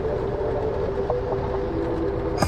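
Steady low rumble of a car being driven, heard inside the cabin, with a faint held hum in the middle range.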